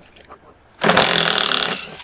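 A small electric driver motor runs in one steady burst of about a second, starting and stopping abruptly, as it spins out a fastener holding a stator core inside a motorcycle side case.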